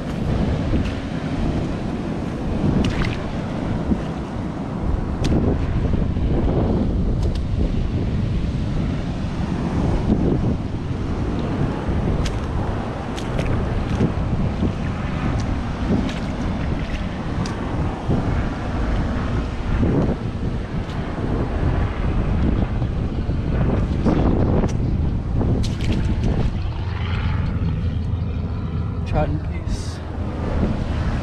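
Wind buffeting the microphone over the wash of surf, with scattered clicks and crunches of footsteps on rocks and pebbles.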